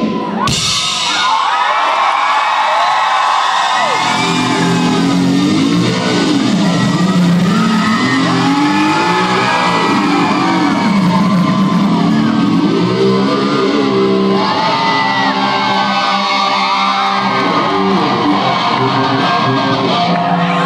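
Live electric guitar solo played loud through the PA in a large hall: bent, gliding high notes at first, then fast runs up and down from about four seconds in, with a crowd shouting and cheering underneath.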